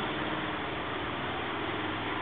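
Steady whir of computer cooling fans with a faint low hum.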